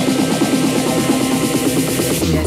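Techno music from a DJ mix, playing loud and continuous with a dense, fast-repeating synth pattern over a held low note.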